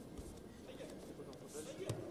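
Indistinct voices echoing in a large hall, then a single sharp thud near the end as a judoka is taken down onto the tatami.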